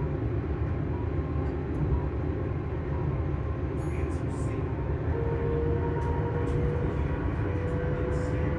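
Hitachi Class 385 electric multiple unit heard from inside the carriage while running: a steady low rumble, with a thin traction motor whine that sets in about five seconds in and rises slowly in pitch.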